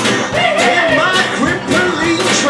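Live band playing an upbeat country-rock jam: acoustic guitar strumming over a drum kit, with a washboard scraped in rhythm.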